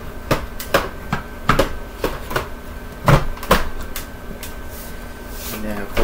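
Plastic clicks and knocks from a Hoover WindTunnel 2 upright vacuum being handled and its parts fitted back together, with the motor off. About a dozen irregular taps and snaps, the loudest around three seconds in, over a faint steady hum.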